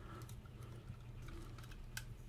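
Faint clicks and light rattling of hard plastic parts as a Transformers Voyager-class action figure is handled and transformed, with one sharp click near the end, over a steady low hum.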